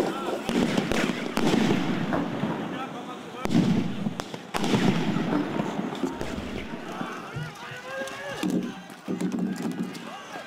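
Several sharp bangs of firecrackers and other pyrotechnic explosives going off, over the noise of a crowd with shouting voices, louder toward the end.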